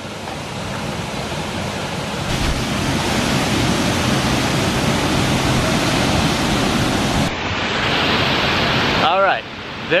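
Salto del Laja waterfall: a steady rush of water pouring off the cliff, heard from close by, changing abruptly in tone about two and seven seconds in. A man's voice starts near the end.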